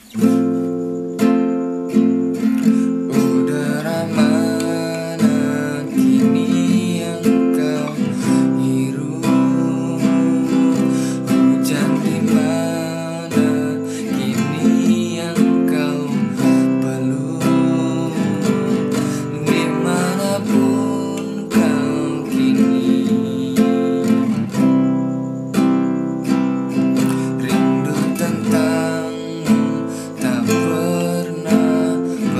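Acoustic guitar strummed in a steady repeating rhythm, playing the chorus chords A minor, F, C and G.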